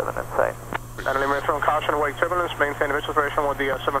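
A voice over the aircraft radio, narrow and tinny, talking from about a second in almost to the end, over a steady low hum in the cabin.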